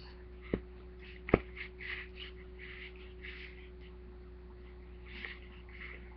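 A lid being put back on a small craft supply container: two sharp clicks about a second apart, the second louder, then soft rustling and handling sounds, over a steady faint hum.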